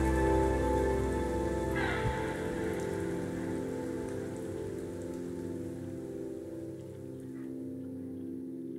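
Rain falling steadily, with the song's final sustained chord slowly fading out beneath it.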